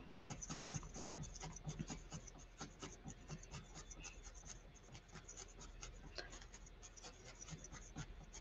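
Faint, rapid jabbing of a wooden-handled felting needle into wool, several strokes a second, each a small scratchy click.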